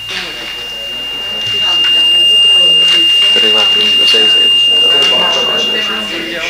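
Microphone feedback through the chamber's sound system: a single steady high-pitched whistle that swells over the first two seconds, holds, and fades near the end, under low murmured voices.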